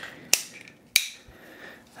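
Two sharp plastic clicks about half a second apart, from small tool-belt clips being worked in the hands.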